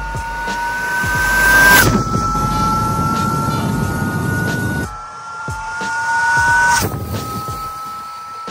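Electric motor whine of a Sur-Ron electric dirt bike with an upgraded 72 V motor, climbing in pitch as the bike speeds toward the camera, over tyre and wind noise. The whine is loudest about two seconds in, then its pitch drops suddenly as the bike passes. The same climb and sudden drop happen again about seven seconds in.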